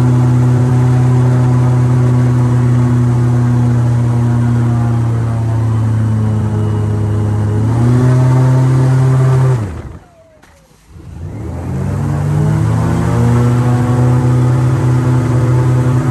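Airboat engine and propeller running at speed, a loud steady drone. About ten seconds in the throttle drops off briefly, then comes back up with the pitch rising.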